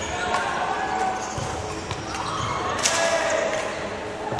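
Badminton play on a wooden sports-hall floor: footfalls and shoe squeaks on the court, with racket strikes on the shuttle, the sharpest hit coming near three seconds in.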